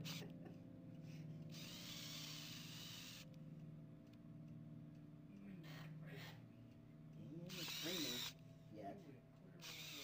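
Small electric drive motors of a wheeled home robot whirring faintly in two short bursts, about a second and a half in and again near eight seconds, over a low steady hum.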